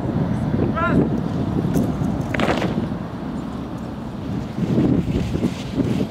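Wind buffeting the microphone, with distant voices underneath and one short, high arched call about a second in.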